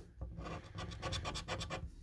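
A lottery scratch card being scratched: quick repeated scraping strokes across the card's rub-off coating, with short pauses near the start and just before the end.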